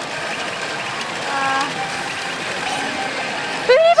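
Pachinko parlour din and the Gundam Unicorn pachinko machine's effects during its fever (jackpot) presentation: a dense, steady wash of machine sound with a short steady chime about a second and a half in.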